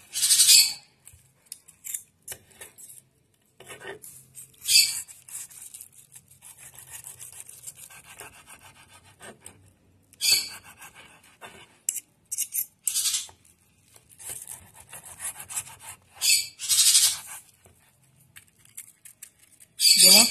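Knife slicing through a grilled chicken thigh and scraping on a wooden cutting board: short, crackly, scratchy strokes at irregular intervals, the loudest about half a second in and around five, ten and seventeen seconds. The crackle is the skin, which is only a little crisp.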